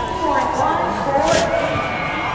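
Indistinct voices of several people talking, with a short hiss about one and a half seconds in.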